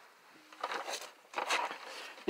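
Faint, scattered scuffs and rustles of a person moving about while handling the camera, with a few soft, short knocks.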